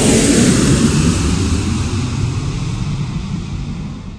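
Jet airliner flyby sound effect: a loud roar of jet engines passing, its pitch sliding down, fading away near the end.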